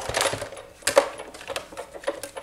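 Clicking and clacking of a hand-cranked Big Shot die-cutting and embossing machine and its plastic plates as an embossing-folder sandwich comes through the rollers and is lifted off, with a sharp clack about a second in.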